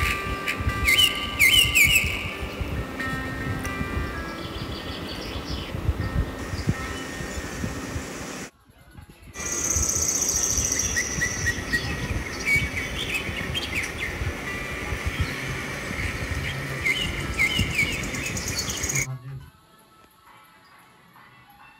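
Birds chirping over a low rumbling noise, with a brief dropout about eight and a half seconds in; the sound falls away about a second before the end.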